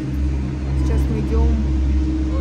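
Steady low hum and drone of gondola lift station machinery, with faint voices about a second in.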